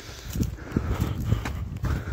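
Footsteps walking briskly on a rocky dirt trail, about three steps a second.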